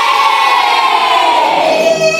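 A class of children singing together in chorus, holding a long drawn-out note that slides down in pitch.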